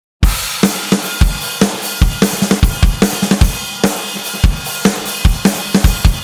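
A drum kit playing alone at the start of a song, beginning about a quarter second in: a driving beat of kick drum, snare and cymbals.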